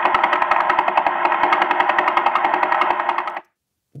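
The Vela pulsar's radio signal rendered as sound: a rapid, even train of clicks, about eleven a second, over a steady hiss. It cuts off suddenly near the end.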